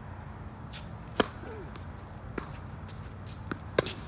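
Tennis ball struck by rackets during a rally: a sharp pop of the serve about a second in, a fainter hit from the far end, then a bounce and a second loud racket hit as the forehand is returned near the end.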